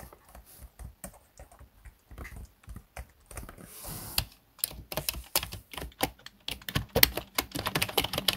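Fingers typing on a computer keyboard, first on a laptop's flat chiclet keys. The key clicks are sparse and soft at first, with a brief hiss about four seconds in, then the typing turns faster and louder in the second half.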